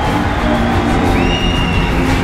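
Loud music with a steady low beat and held tones, a higher tone joining a little past the middle.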